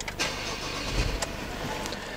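Ford Everest's 3.2 TDCi diesel engine starting and settling into idle, heard inside the cabin.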